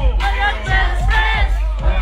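Live hip-hop concert music over a large PA system with a steady bass beat, and the crowd's voices loud over it, recorded on a phone in the audience.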